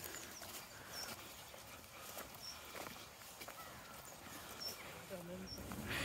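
Faint footsteps and rustling on a muddy path, with several short, high bird chirps scattered through. A brief low voiced sound comes near the end.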